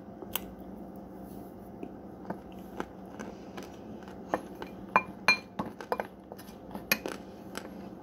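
Metal spoon clinking and scraping against a glass bowl as it digs into powdered cornstarch: a run of sharp clinks, some with a short glassy ring, coming thickest in the second half.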